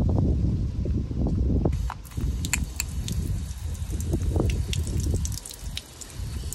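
A Kärcher multi-function spray gun on a garden hose being handled and spraying water onto paving. A low rumbling handling noise fills the first two seconds, followed by scattered sharp clicks and splashes.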